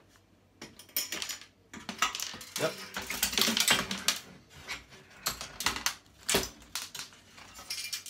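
Sheet-metal back plate of a flat-screen TV being pried up and lifted off its chassis, rattling and clanking in a run of metallic clicks and knocks, busiest in the middle, with a sharp knock about six seconds in.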